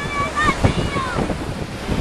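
Wind buffeting the microphone over surf washing up onto the sand, with short calls from voices in the first second.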